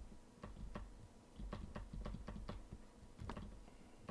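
A dozen or so light, irregularly spaced clicks of a computer keyboard and mouse being worked, over a faint low hum.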